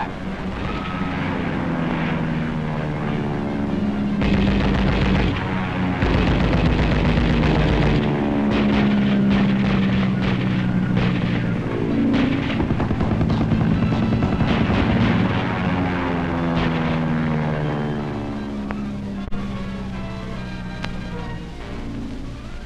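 Propeller aircraft engines passing overhead, their pitch swelling and falling as they go by, with bursts of gunfire through the middle, on an old film soundtrack with music.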